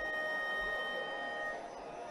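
A Carnatic violin holding one long bowed note, easing off near the end.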